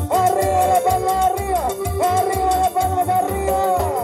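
Live band dance music: a held, sliding lead melody over a pulsing bass beat, with drum kit, timbales and congas keeping a steady rhythm.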